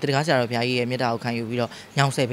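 A man speaking in Burmese, talking continuously with only brief pauses.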